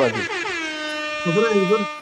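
A loud, steady horn-like tone glides up in pitch at the start and is then held for nearly two seconds, with a man's voice talking over it in the second half.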